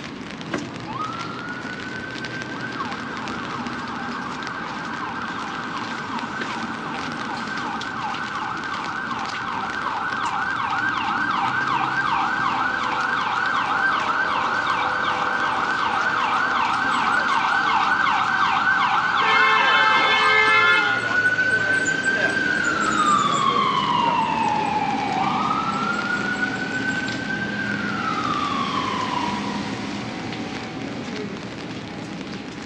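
Emergency vehicle siren passing along the street, getting louder and then fading. A fast warbling yelp runs for most of the first twenty seconds, broken near its loudest point by a brief run of harsh horn blasts, then gives way to slow rising and falling wails.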